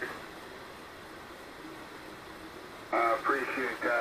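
Hiss and band noise from a ham radio receiver tuned to 40 m lower sideband in a pause between transmissions. About three seconds in, a man's voice cuts back in over the radio, thin and narrow-band like single-sideband speech.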